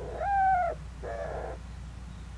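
Mourning dove cooing: one loud, slightly falling coo note, then a softer, lower one. It is the coo the parents exchange to announce feeding time to the squabs.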